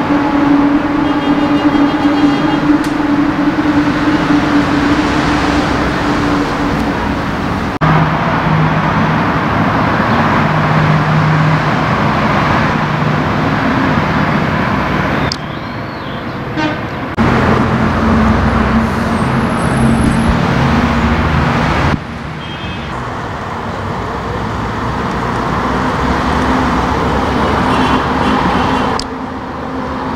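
Road traffic on a city street: cars and vans driving past, with steady engine hum and tyre noise. The sound changes abruptly several times.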